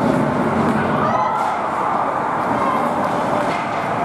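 Indoor ice rink during hockey play: a steady rumble of rink noise with skates cutting on the ice and faint distant voices.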